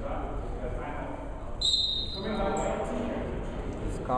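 Spectators' voices murmuring in a gymnasium, with a short, loud, high whistle blast about one and a half seconds in.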